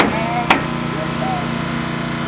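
Small engine of a rescue tool's hydraulic power unit running steadily. Two sharp knocks come about half a second apart at the start.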